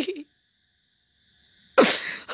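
A man's recited line trails off, then a pause with almost nothing, and near the end a sudden short, breathy burst from the voice that falls in pitch.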